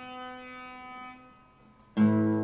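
Acoustic guitar chord left ringing and slowly fading away, almost gone about one and a half seconds in, before a fresh strum right at the end.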